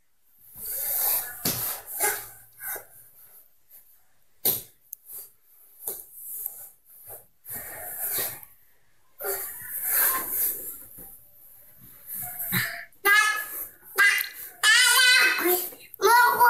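Scattered soft rustles and breathy sounds with a few light knocks, then a high-pitched voice vocalizing in the last few seconds.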